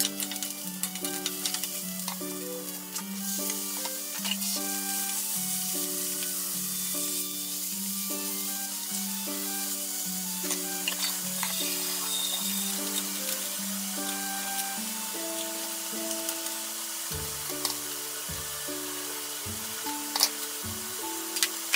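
Sliced eggplant and pork belly sizzling in a frying pan as they are stirred, with scattered short clicks of the spatula and chopsticks against the pan. Background music with a steady, stepping melody plays over the frying.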